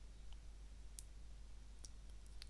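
A few faint computer mouse clicks over low room hiss and a steady low hum, the clearest about a second in.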